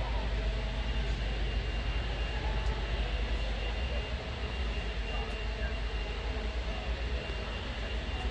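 Steady low rumble and background chatter of a large indoor hall, with a faint steady high-pitched tone running through it.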